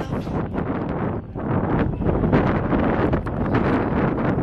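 Wind buffeting the microphone over the hoofbeats of racehorses breaking from the starting gate and galloping down a dirt track.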